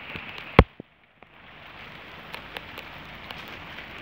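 Steady rain falling on a patio, pots and leaves, with scattered sharper drop taps. A single sharp knock comes about half a second in, after which the sound briefly cuts out and the rain fades back in.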